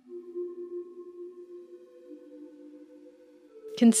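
Ambient background music: a soft drone of a few long held notes, with a higher note joining about a second and a half in. Narration starts at the very end.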